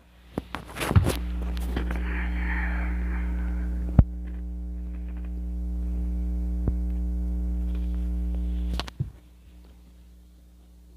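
Loud electrical mains hum with a stack of steady overtones. It starts after a few handling clicks and scrapes, holds for about eight seconds with one sharp click midway, and cuts off suddenly. Typical of a wired earphone plug or cable being handled.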